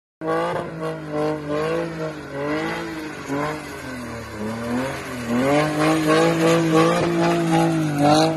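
Drift car's engine revving up and down over and over under throttle as its rear tyres spin and squeal through smoky donuts, louder from about five seconds in.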